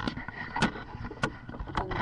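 Handling noise from the camera being picked up and repositioned: rubbing against the microphone with several sharp knocks.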